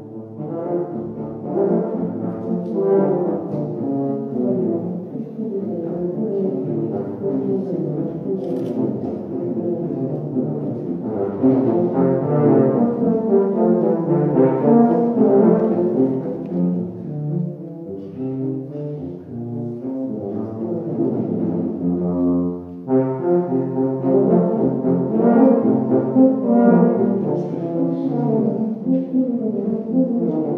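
Two tubas playing a Baroque allemande as a duet, two moving melodic lines weaving in counterpoint. There is a short break in the playing about three-quarters of the way through, then both parts resume.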